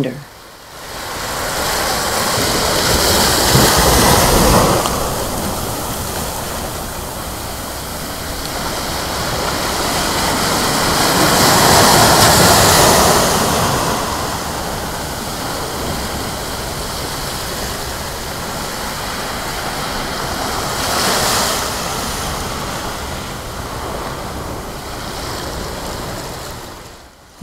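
Ocean surf breaking on a sandy beach, a steady rush that swells louder about every eight to nine seconds as waves come in.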